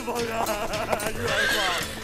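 A horse whinnies once, a wavering high-pitched call lasting under a second, starting a little after a second in.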